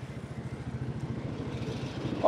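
Steady low engine drone with fast, even pulsing and road noise, heard from a vehicle moving along a road.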